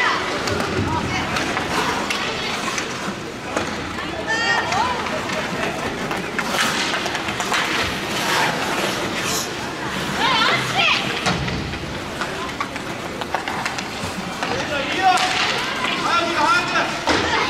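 Ice hockey game sound in an indoor rink: a steady scraping noise of play on the ice, with short high-pitched shouts of players and onlookers breaking in now and then, and a few sharp stick clicks.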